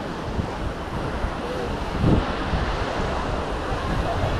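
Small waves washing onto a sandy beach, with wind buffeting the microphone and a stronger gust of wind noise about halfway through.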